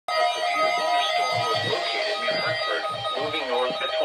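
Weather radio broadcasting a severe weather statement: a voice reads the bulletin through the radio's small speaker, with steady tones running underneath.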